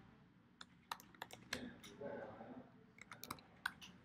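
Computer keyboard keys being tapped: a faint, irregular run of about a dozen quick keystrokes.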